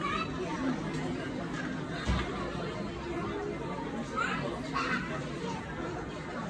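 Background chatter of shoppers' voices, children's voices among them, with no clear words. A single dull low thump stands out about two seconds in.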